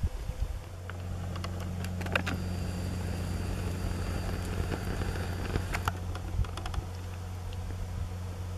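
A steady low hum sets in about a second in and holds, with a few scattered light clicks over it.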